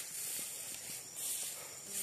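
Steady high-pitched outdoor hiss with a few faint rustling ticks.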